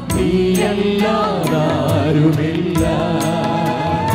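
A group of women singing a Christian devotional song together into microphones, backed by a live band with a steady drumbeat.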